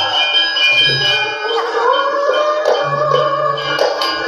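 Javanese gamelan music accompanying ketoprak: ringing metallic tones over repeated low drum beats, with a sliding melodic line rising and falling through the middle.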